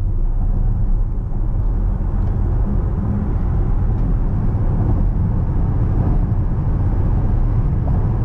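Cabin noise of a Voyah Free electric SUV under hard acceleration at motorway speed, from about 80 to 170 km/h: a steady low rumble of tyre roar and wind, with no combustion engine note.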